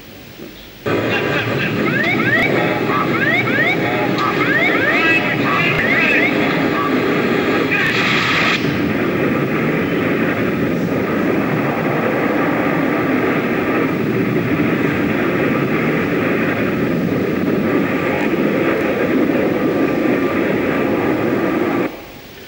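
Soundtrack of news footage of a DC-10 crash landing, played through the hall's loudspeakers: a loud, steady aircraft din that starts about a second in and cuts off abruptly at the end. It carries many short rising sounds in its first few seconds and a brief brighter burst about eight seconds in.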